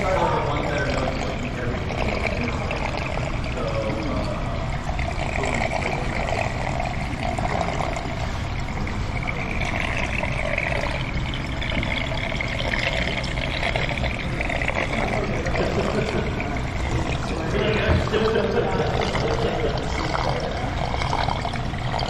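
Seawater running steadily into an aquarium tank from a supply hose, a continuous pouring and trickling. Indistinct voices talk in the background.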